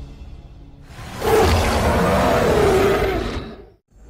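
Quiet low music, then about a second in a loud, noisy trailer sound effect swells in, holds for about two seconds, and fades out to a moment of silence near the end.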